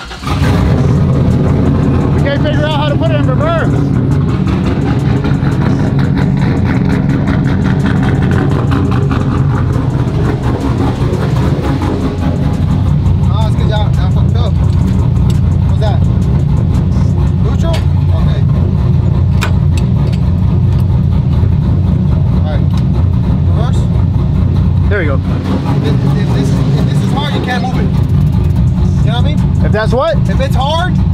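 Chevrolet cateye Silverado pickup's engine idling steadily, loud from inside the cab, with voices over it.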